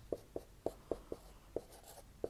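Marker pen writing on a whiteboard: about seven short, separate strokes and taps, fairly faint.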